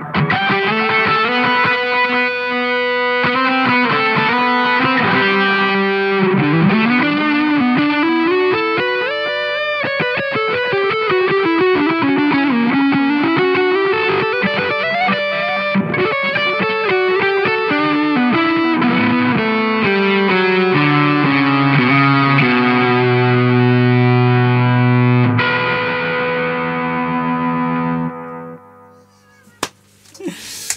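Electric guitar played through the Doomsday Effects Cosmic Critter fuzz pedal: distorted lead lines with string bends and sustained notes. It ends on held low notes that stop sharply about three-quarters of the way through, leaving a note ringing out and fading.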